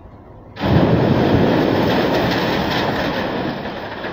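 A huge mass of roof-edge ice dam and icicles breaking off a building and crashing down: a sudden loud rumbling crash about half a second in that goes on for over three seconds, slowly fading.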